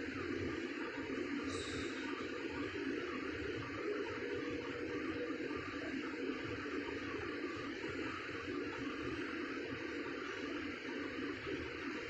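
Steady hiss of room background noise, even and unbroken.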